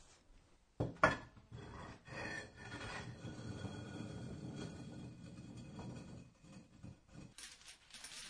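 Masonry sound effect: a trowel scraping and working mortar against stone blocks, an irregular rasping that runs for several seconds and stops shortly before the end.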